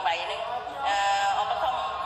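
A man singing over backing music, the voice holding long, steady notes.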